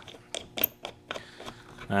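A few light, scattered clicks and taps from a hand handling the clear plastic spool cover of a Miller 30A aluminum spool gun.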